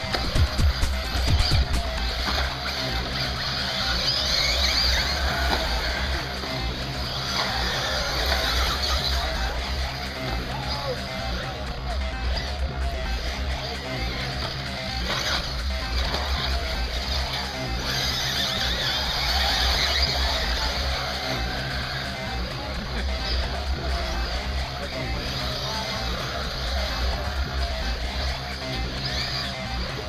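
Music playing over the steady high-pitched whine of 1/8-scale RC buggies racing, swelling louder as cars pass close, about four seconds in and again near twenty seconds.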